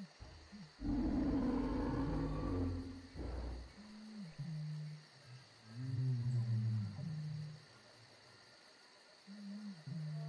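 Large-animal-like calls: a loud, rough call lasting about three seconds, then lower, drawn-out pitched calls that bend up and down.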